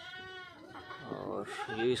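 A goat bleating twice: a short call, then a longer wavering one.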